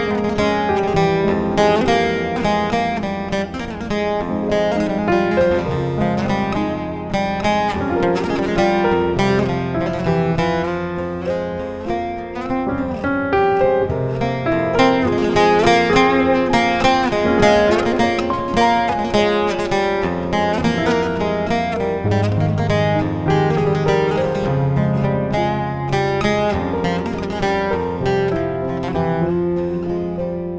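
Bağlama (saz) playing a Kurdish folk melody in quick plucked notes, with a keyboard playing piano chords and bass notes underneath. The music is improvised and runs continuously.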